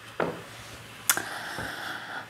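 A paperback book being picked up and handled: a light knock about a quarter second in and a sharper one about a second in, followed by a soft papery rustle.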